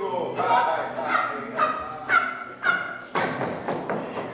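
A woman's voice in short wordless cries, about one every half second, then a breathy rush near the end.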